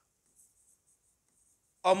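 Faint, scratchy strokes of a hand writing on a board, high-pitched and soft, with a few light ticks. A man's voice starts speaking near the end.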